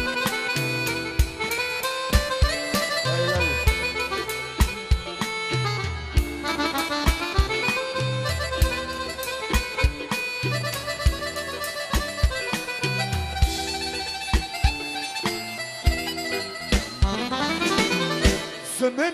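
Korg Pa800 arranger keyboard playing lively folk dance music: a fast melodic lead over a steady drum beat and pulsing bass.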